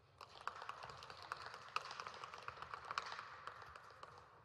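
Scattered clapping by a few people: a quick run of uneven claps that starts just after the beginning, builds, and dies away near the end.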